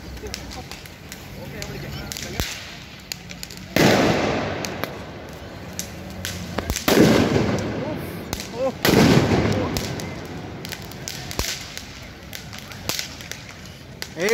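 Fireworks set off on the ground: a run of small crackling pops, broken by three loud bangs about four, seven and nine seconds in, each trailing off over a second or two.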